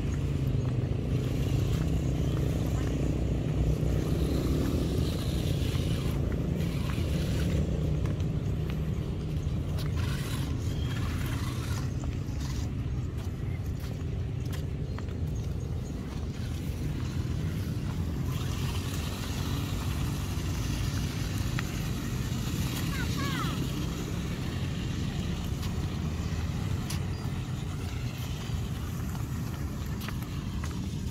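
Outdoor ambience: a steady low rumble throughout, with indistinct voices of people nearby.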